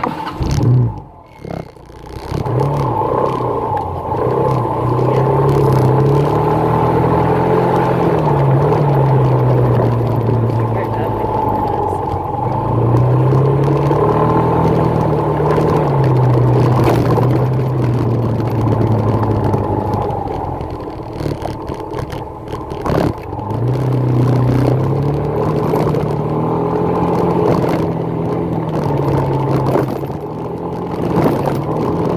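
Motorcycle engine running on the road, its pitch climbing and dropping in long sweeps every few seconds as it speeds up and slows down, over a steady rushing noise.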